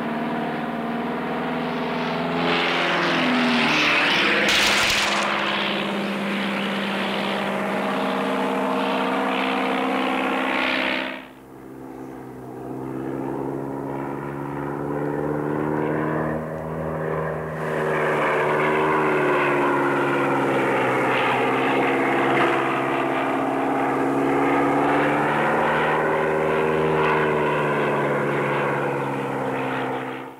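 Light propeller aircraft's engine droning in flight, its pitch rising and falling. There is a short sharp crack about five seconds in, and the sound drops away suddenly around eleven seconds before building back up.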